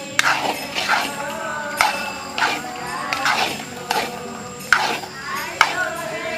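Background music with singing, over about eight sharp, irregular metal clinks of a spatula striking and scraping a karahi as the vegetables are stirred.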